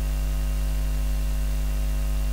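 Steady electrical mains hum, a low constant buzz with a ladder of overtones, over a faint hiss.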